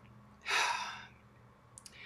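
A woman sighing: one breathy exhale about half a second in, lasting about half a second, followed by a couple of faint clicks near the end.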